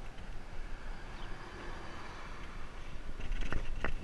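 Wind and handling rumble on a moving action camera's microphone, with a few sharp knocks near the end.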